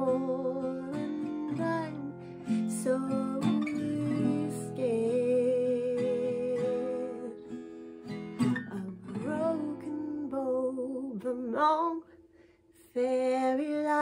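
Acoustic guitar strummed under a woman's singing voice, which holds long, wavering notes. The music drops out for about a second near the end, then guitar and voice come back in.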